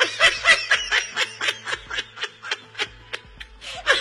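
Laughter in quick repeated bursts, about three to four a second, over background music with a steady low beat.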